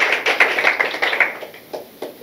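Audience applauding, a dense patter of hand claps that dies away about a second and a half in.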